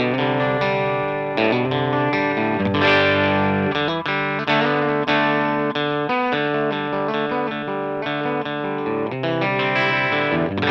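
Novo Solus F1 electric guitar with a single Telecaster-style bridge pickup, played amplified: a continuous run of picked chords and single notes.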